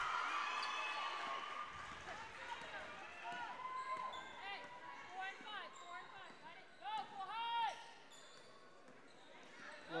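Basketball sneakers squeaking on a hardwood gym floor as players run and cut, a string of short squeaks with the loudest pair about seven seconds in, along with a basketball bouncing.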